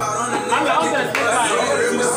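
Several men talking over one another: lively group chatter.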